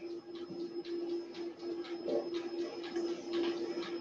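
Spatula scraping chocolate cake batter out of a stainless steel mixing bowl into a metal cake pan: a run of short, irregular scrapes over a steady hum.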